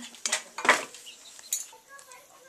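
Metal pots and utensils clinking and knocking, several sharp strikes in the first second and a half.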